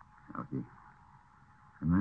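A brief pause in a Thai monk's recorded sermon: two short throaty syllables about half a second in, then the next word starting near the end, over a faint steady hiss from the recording.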